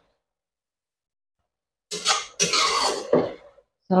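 Silence for the first two seconds. Then a slotted metal spatula scrapes and stirs shredded oyster mushrooms and chillies around a wok in two short strokes, about a second and a half in all.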